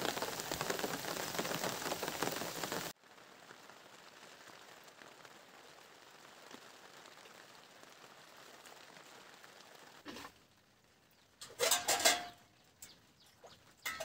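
Steady rain falling on vegetation, cut off abruptly about three seconds in, leaving a faint hiss. A few brief clattering sounds come near the end.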